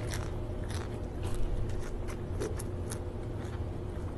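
Close-up mouth sounds of biting into and chewing a lettuce-wrapped bite of steamed squid: irregular crisp crunches and wet clicks, loudest about a second and a half in, over a steady low hum.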